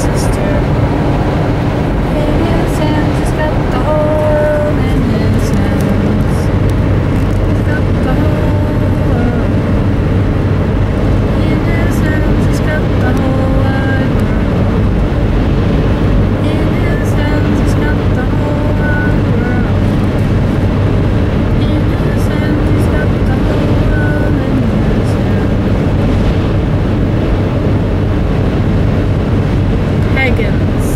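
Steady road and engine noise inside a car's cabin at highway speed, with a faint, indistinct voice beneath it.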